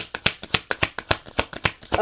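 A deck of tarot cards being shuffled by hand: a fast run of crisp card snaps, about eight or nine a second.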